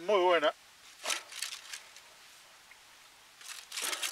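Aluminium foil crinkling as a food wrapper is handled, in a short spell about a second in and again near the end, after a brief voiced sound at the very start.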